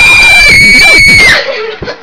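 A girl screaming in celebration: one long, very loud, high-pitched scream held at a steady pitch that cuts off about a second and a half in.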